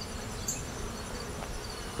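Honeybees buzzing around an open hive, a steady insect hum.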